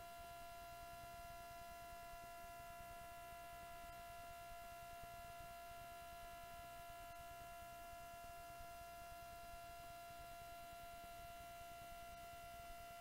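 Near silence: faint hiss with a steady electrical whine of several high tones, unchanging throughout.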